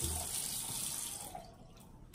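Bathroom faucet running into the sink while soap is rinsed off a face, the water stopping about a second and a half in.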